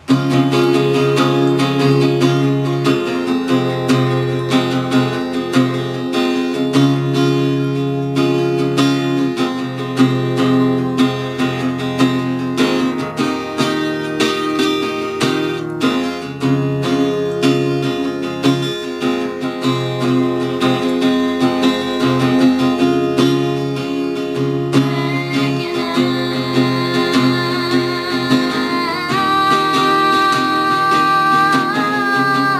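Guitar playing a slow, repeating pattern of sustained notes, starting abruptly. A woman's singing voice joins near the end.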